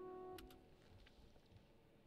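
A sustained keyboard chord, held on by the hold pedal, rings and is cut off about half a second in with two short clicks as playback stops. Near silence follows.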